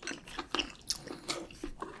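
Close-miked chewing of a full mouthful of food, a run of short, uneven mouth clicks about three a second.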